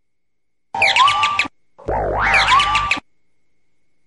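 Two short electronic sound-effect stingers accompanying a TV show's animated title card, each a cluster of sliding tones lasting under a second; the second opens with a rising sweep.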